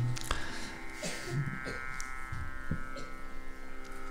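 A steady background drone of several held musical tones, with a brief soft vocal hum about a second and a half in and a few small clicks.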